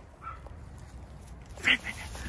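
A small dog gives one short, high-pitched yip about one and a half seconds in, over a low rustle.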